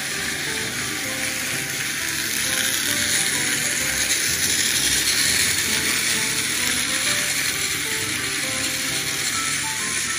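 Several battery-powered Plarail toy trains (Kana, Donald and Douglas) running on plastic track: a steady whir of small electric motors and gearboxes, with the wheels on the rails.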